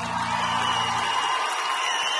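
Studio audience applauding and cheering, swelling as the last sustained piano chord fades out about a second in.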